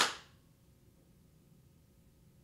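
A single sharp smack at the very start that dies away within about a third of a second, followed by near silence.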